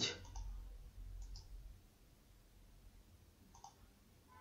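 Faint computer mouse clicks, two or so short ones spaced a couple of seconds apart, over a low room noise that fades out early on.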